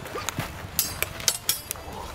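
A quick series of sharp clacks, about six in under two seconds, a few with a short high metallic ring: steel training longswords striking and binding against each other in sparring.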